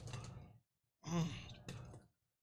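A man blowing out a hard breath through pursed lips, then a loud groan falling in pitch about a second in: pain from the burning heat of an extremely hot chili chip.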